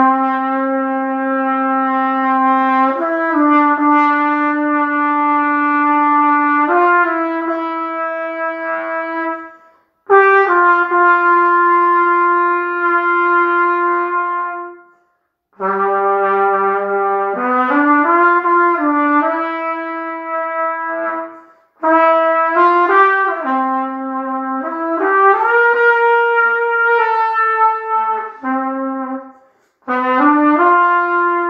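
A solo brass instrument playing a slow, unaccompanied melody in long held notes. It plays four phrases, each ending in a short breath pause.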